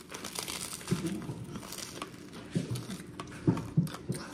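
Close-up crunchy chewing: a mouthful of crisp toasted bread and panko-crusted fried chicken crackling between the teeth.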